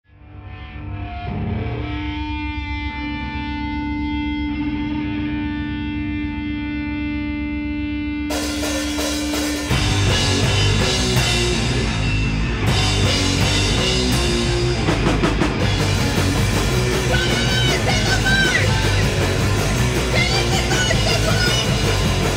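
Noise punk band playing live: a held, sustained electric guitar tone builds first, a wash of noise comes in about eight seconds in, and the full band, with distorted guitar, bass and drums, crashes in loudly about ten seconds in.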